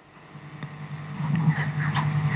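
A low, steady hum that grows louder over the two seconds.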